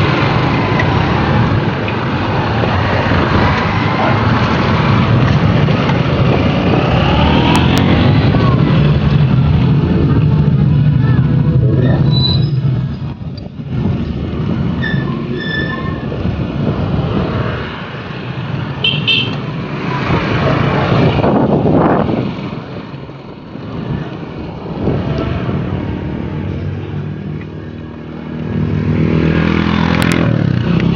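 Road traffic heard from a moving bicycle: a continuous rumbling noise with motorcycles and other vehicles passing, several swelling up and fading away, the clearest about two-thirds of the way through.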